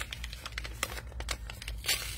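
Black paper packaging crinkling and rustling in the hands as the packet is opened, with light crackles throughout and a louder rustle near the end.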